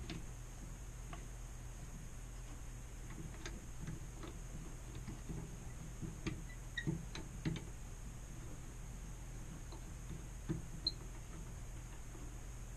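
Woodturning lathe chuck being loosened with a T-handle chuck key: scattered light metal clicks and taps, bunched around the middle and again near the end, over a steady faint hum.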